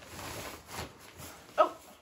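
Nylon backpack and stuff-sack fabric rustling as hands rummage in the pack and pull a stuff sack out, ending in a short vocal "oh".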